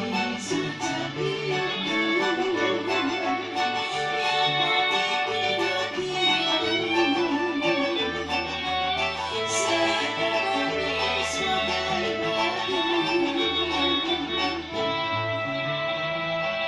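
Live kroncong ensemble playing: a violin carries a wavering melody over strummed and plucked string instruments, a cello bass line and keyboard, in a steady rhythm.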